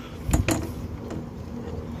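A couple of brief knocks about half a second in, over a faint steady hum: handling of a wooden template against a boat's metal pulpit rail.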